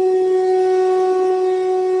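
A conch shell (shankh) blown in one long, steady note, rich in overtones.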